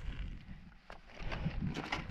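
Handling noise of a road bike being lifted and held upright: faint irregular rustling with a few light clicks, over a steady low rumble.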